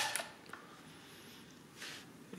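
The end of a crank turn on a Hamann Manus E mechanical calculator: the clatter of its mechanism stops just after the start, followed by a single click about half a second in. Then it goes quiet apart from a soft brushing sound near the end.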